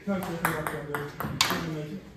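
Table tennis ball clicking off paddles and the table in a quick rally: about six sharp ticks in the first second and a half, the loudest near the middle.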